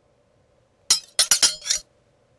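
A quick run of about five sharp, bright clinks, like hard objects striking glass or metal, lasting under a second.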